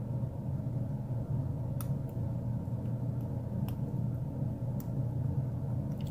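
A few faint, scattered clicks of a hook pick working the pins of a five-pin Wilson Bohannan brass padlock held at a false set, over a steady low hum.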